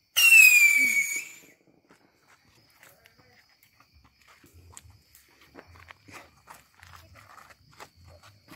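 A whistling firecracker going off: a loud, high shriek that starts suddenly, falls slightly in pitch and dies away over about a second and a half. Faint scattered ticks and crackles follow.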